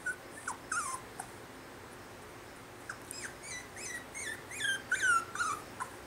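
Cocker spaniel puppy whimpering: a few short, high, falling squeaks at first, then a quicker run of them through the second half.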